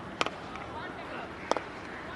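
A sharp crack of a cricket bat striking the ball, then a second sharp knock about a second and a half later, over faint background voices.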